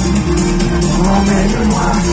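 Live pop music from a concert PA, loud, with a steady beat in the bass; an instrumental stretch with no singing.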